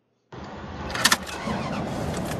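A car engine starting, with two sharp clicks about a second in, then running steadily.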